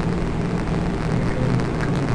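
Steady hiss with a low hum underneath: background noise of the room or recording during a pause in speech.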